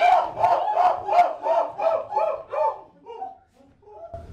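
Performers' voices making short, repeated calls that rise and fall in pitch, about three a second, tailing off and dying away about three seconds in.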